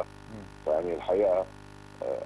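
A steady electrical hum runs under the audio, with a short phrase of a man's speech about a second in.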